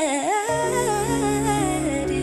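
Female vocalist singing a held, wavering note with vibrato that dips and climbs in a short run. About half a second in, sustained low bass and held accompaniment chords come in beneath the voice.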